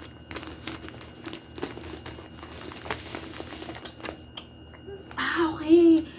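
Clear plastic packaging crinkling and rustling as it is handled, with many small irregular crackles over the first four seconds. A brief bit of a woman's voice comes near the end.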